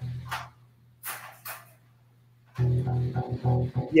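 Guitar, plugged in by USB, played in low plucked notes as a check that it comes through: a held note fades out in the first second or so, then after a short gap a run of repeated low notes starts a little past halfway.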